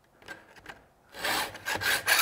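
Hand filing a chainsaw chain with a two-file guide that sharpens the cutting tooth and lowers its depth gauge in the same stroke: metal files rasping on the chain's steel teeth. Nearly quiet for the first half, then two filing strokes in the second half.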